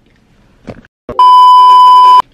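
A loud, steady, high-pitched bleep tone, edited into the soundtrack, starting a little past halfway and lasting about a second before cutting off sharply, after a short laugh.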